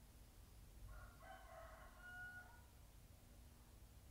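A single faint animal call starting about a second in and lasting about two seconds, over near-silent room tone.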